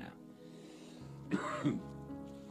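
A man clearing his throat with two short rough coughs about a second and a half in, over a soft, steady background music bed.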